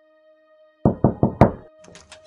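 Knocking on a front door: four quick knocks, starting a little under a second in.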